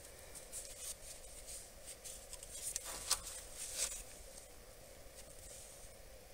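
Faint rustling and light clicks of gloved hands handling a plastic-sheathed glow plug wiring harness, over a faint steady hum.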